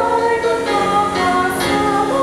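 Three women singing a song together into microphones, holding long notes that step from pitch to pitch.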